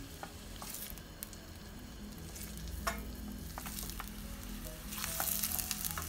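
Chopped onion frying in olive oil in a steel pan with a light, steady sizzle, stirred with a wooden spoon that clicks against the pan a few times. The sizzle grows louder about five seconds in.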